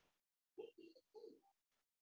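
Faint cooing of a bird, a few short low calls together lasting about a second, with thin high chirps over them.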